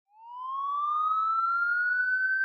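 A single siren-like tone fades in and rises steadily in pitch.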